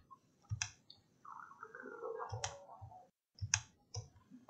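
Computer mouse clicks: four short, sharp single clicks spread unevenly across a few seconds, with a faint wavering sound in between.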